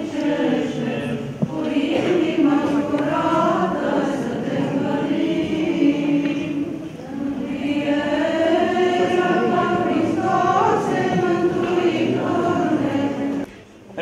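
A church choir and congregation singing an Orthodox Easter chant in one continuous melody, breaking off shortly before the end.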